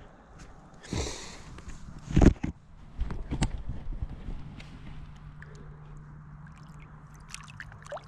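Water splashing and sloshing around a small aluminum boat, with a loud knock about two seconds in and a few lighter clicks after it. A faint steady low hum comes in over the last few seconds.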